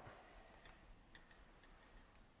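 Near silence: room tone with a few faint, short ticks.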